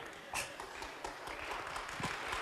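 Faint, scattered audience clapping in a theatre hall, opening with a sharp tap about a third of a second in and slowly building.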